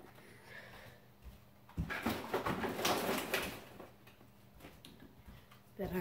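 Cardboard Froot Loops cereal box being handled and put away: a knock about two seconds in, then about a second and a half of rustling and light knocks.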